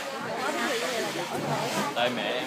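Crowd chatter: many voices talking at once, overlapping, with no single speaker standing out.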